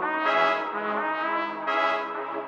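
Beat playing back from the DAW: sustained, brassy synth chords from an Analog Lab preset layered over the beat's melodic parts. A new, brighter chord comes in at the start and another about three-quarters of the way through.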